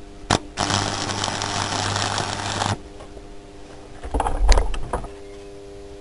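Stick (arc) welder tacking a nut onto a threaded steel rod: a sharp click as the arc strikes, then about two seconds of steady crackling with a low electrical buzz, cut off abruptly. A few knocks and a dull thump follow about four seconds in.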